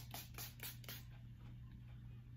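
Miss A setting spray's pump mister spraying the face: a quick run of about five short hissy sprays, around five a second, stopping about a second in.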